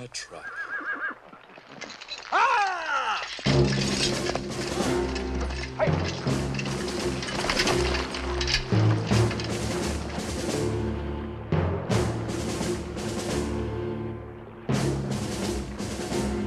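A horse whinnies, a high cry falling in pitch, about two to three seconds in. About three and a half seconds in, a loud orchestral film score enters with repeated drum strikes and carries on to the end.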